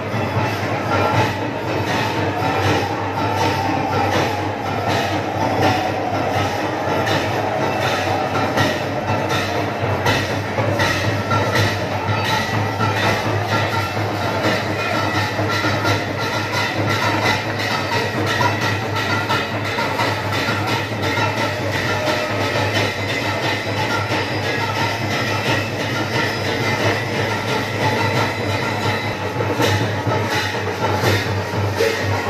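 Devotional kirtan: a crowd singing together over a fast, steady clattering percussion beat, with the chant most prominent in the first part.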